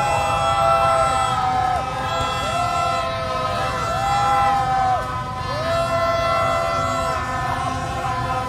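Many plastic fan horns blown at once in a crowd: overlapping long toots, each about a second long, that rise, hold and sag in pitch, one after another. Beneath them is a steady din of crowd and motorbike engines.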